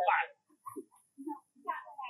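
A macaque's short squealing calls: a loud squeal at the very start, then several brief, quieter calls.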